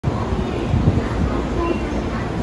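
Station platform noise around a train standing at the platform: a steady, loud, low rumble with a few brief tones over it.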